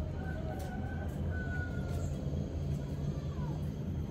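Steady low background rumble, with a few faint thin high tones over it, one sliding down in pitch about three seconds in.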